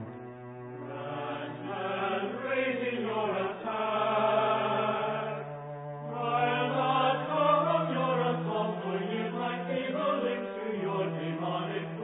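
Choir singing slow, sustained lines over a low held note, which steps up to a higher pitch about five seconds in.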